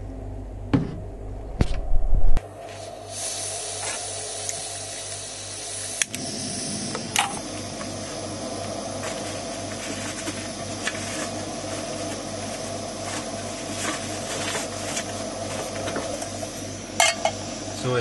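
Portable gas cartridge camping stove hissing steadily once the gas is turned on, about three seconds in. Sharp clicks around six and seven seconds mark the burner being lit. A few handling knocks and bumps come in the first two seconds.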